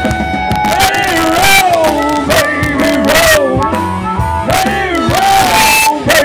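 Live blues-rock band with drums and cymbals, and a harmonica playing bending, sliding notes over it.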